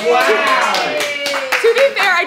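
A voice drawing out one long vocal sound that slides down in pitch, with hand claps coming in, the loudest of them near the end.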